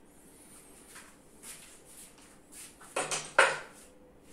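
Metal hand grippers clanking on a pegboard rack as one is handled there: some soft rustling, then two sharp metallic clinks close together, the second louder and ringing briefly.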